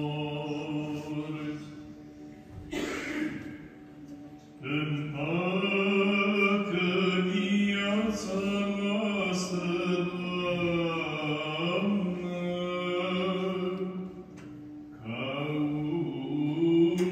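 Orthodox liturgical chanting, sung in long held notes that slowly move in pitch. It breaks off briefly twice, once near the start and once near the end.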